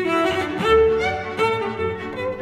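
Cello and string orchestra playing a lyrical melody in held, bowed notes that move to a new pitch about every half second.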